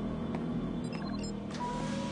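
Film soundtrack with low held music tones over a steady low rumble; a higher sustained tone comes in about one and a half seconds in.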